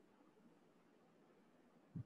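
Near silence: faint room tone, with one short low thump near the end.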